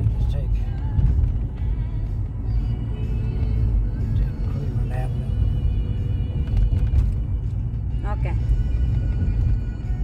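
Steady low road and engine rumble inside a moving car's cabin, with music playing in the background.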